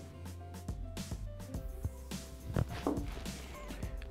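Soft background music with steady held notes, with a few faint ticks.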